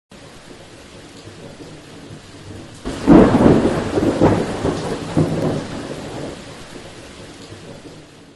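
Thunderstorm sound effect: a steady hiss of rain, then a thunderclap about three seconds in that rumbles on with a couple of further cracks and slowly fades away.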